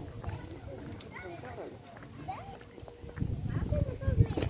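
Faint voices with short gliding, rising and falling calls, then a low rumble on the microphone starting about three seconds in.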